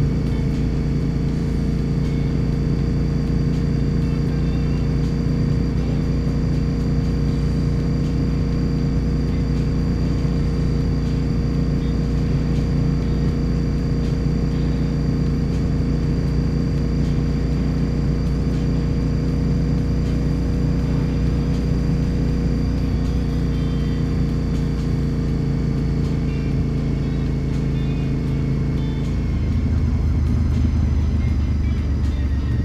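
Honda RC51 SP2's 1000cc V-twin engine running at steady cruising revs, a constant drone with no rise or fall in pitch. Near the end the engine note changes.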